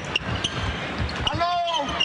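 Basketball game sounds on a hardwood court: the ball bouncing and sneakers squeaking, with a short high squeak about a second and a half in, over the murmur of the arena crowd.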